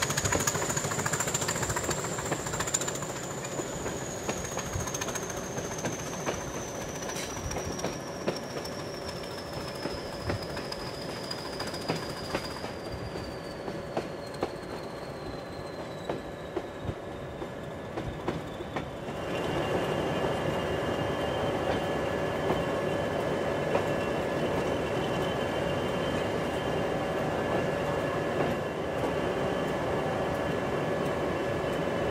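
English Electric Class 20 diesel locomotive working, heard from beside its engine compartment. Its high turbocharger whine falls slowly in pitch through the first two-thirds as the engine eases off. It then gives way to a louder, steadier engine note with a few clicks from the track.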